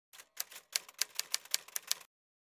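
Typewriter keys clacking in a quick run of sharp strikes, about five a second. This is a typewriter sound effect that accompanies the title being typed onto the screen letter by letter.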